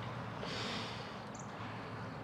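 A person's breathy exhale, a single sigh about half a second long, over a steady low hum.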